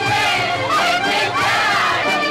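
Albanian folk dance music from a small folk orchestra, with a group of voices singing out together over the instruments.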